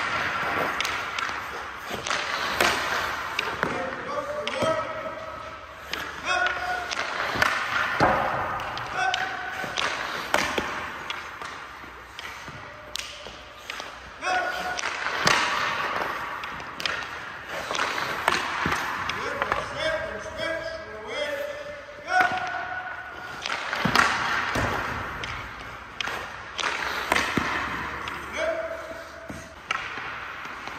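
Hockey pucks struck and deflected, cracking off sticks, goalie pads and the boards again and again, each knock ringing in the rink, with voices calling in the background.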